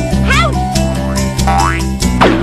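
Cartoon soundtrack: background music with steady held notes and bass, overlaid with comic sound effects, a quick wobbling upward pitch glide about half a second in and a smooth rising slide near the end.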